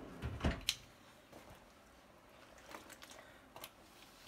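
Stainless kitchen tongs knocking and clicking against a large metal stockpot as dye-soaked clothing is stirred: one clearer knock and click about half a second in, then a few faint clicks, the rest mostly quiet.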